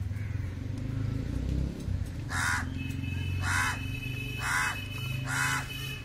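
A crow cawing four times, about a second apart, harsh calls over a low steady hum.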